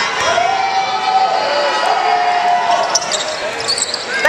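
A basketball being bounced on a hardwood court during a free throw, over arena crowd noise and voices that include a couple of long held yells.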